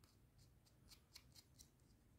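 Faint string of small metallic clicks and scrapes, about seven over a second and a half, as fingers twist and screw a metal coaxial TV antenna plug onto a cable end.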